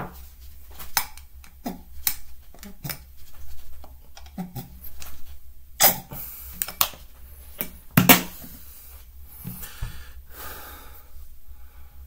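Handling a plastic body-wash bottle and a glass tumbler while squeezing the wash into the glass: a scatter of light clicks and taps, with a couple of sharper knocks past the middle.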